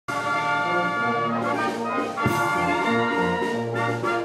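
Brass band playing slow, held chords, with a new chord struck a little over two seconds in.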